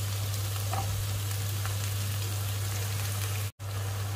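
Chopped tomato, spring onion, bell pepper, garlic and shallot sizzling steadily in hot oil in a nonstick frying pan as they are sautéed to wilt, over a steady low hum. The sound cuts out abruptly for a moment about three and a half seconds in.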